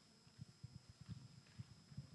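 Near-silent hall room tone with a handful of faint, irregular low thumps.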